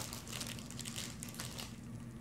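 Faint, scattered rustling and crinkling as a cat walks over the cloth and packaging and brushes its fur against the camera.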